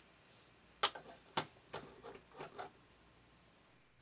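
Mechanism of an opened-up Panasonic hi-fi stereo VCR clicking and ticking as it runs a tape, several irregular clicks in the first two and a half seconds, the loudest two about a second in and a second and a half in.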